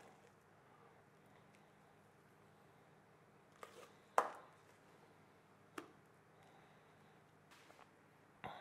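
A few short knocks and scrapes as thick batter is worked out of a steel mixer bowl into a silicone bundt mould, the loudest about four seconds in, over quiet room tone.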